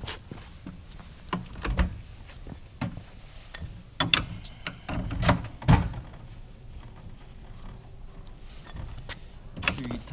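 Aluminium legs clanking and knocking against a metal camp kitchen unit as they are fitted and the unit is set down on pavement: a string of sharp knocks, loudest about four to six seconds in, then a quieter stretch.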